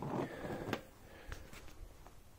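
Cardboard model box being closed and handled: a few light knocks and scrapes of card against card.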